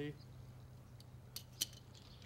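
A few light metallic clicks from a multi-tool and small test fittings being handled, the loudest about a second and a half in, over a faint steady low hum.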